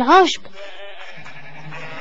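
A cartoon sheep's bleat: one short call that rises and falls in pitch and ends a fraction of a second in, followed by a faint steady background.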